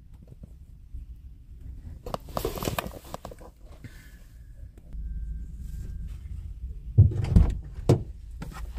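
Handling noises from things being moved about against a pickup truck: rustling about two seconds in, then a few dull thumps near the end, over a low rumble.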